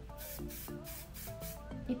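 Aerosol can of Sebastian Professional hairspray sprayed onto the hair in a series of short hissing bursts.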